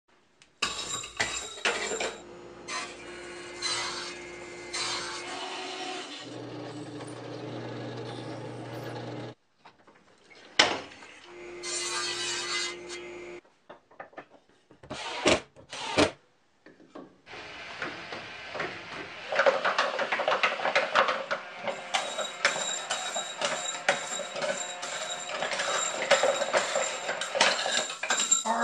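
A string of workshop power-tool sounds: motors running with steady tones and a hum while a drill press bores wood, broken by silent gaps and a few sharp knocks. From about halfway through, a handheld drill drives the wooden slinky escalator, a dense run of clicking and clatter from the wooden mechanism and the metal slinky.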